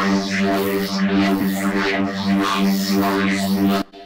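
Growl bass synth sample in Logic Pro X's Quick Sampler, triggered by a single key tap in One Shot mode: one sustained low bass note whose upper tones sweep up and down about twice a second. It plays through to the end of the sample and cuts off suddenly near the end, even though the key was only tapped.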